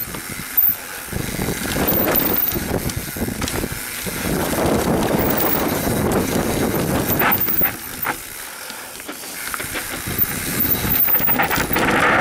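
YT Capra mountain bike running fast down a dry dirt trail: wind rushing over the camera and tyres rolling on loose dirt, with scattered knocks and rattles from the bike over bumps. It quietens briefly about two-thirds of the way through.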